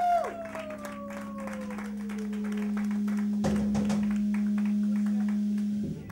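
Electric guitar and amplifier ringing out at the end of a song: a held note sliding slowly down in pitch over a steady amp drone that cuts off near the end, while the audience claps. A low thump about halfway through.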